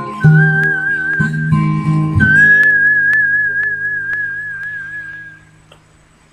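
A man whistling a slow ballad melody by mouth over backing music: a few short phrases, then a long final note held with vibrato that fades out with the accompaniment near the end.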